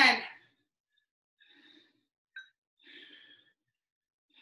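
A woman breathing out hard twice, faintly, about a second and a half and three seconds in, as she works through dumbbell squat-to-presses. A light click comes in between.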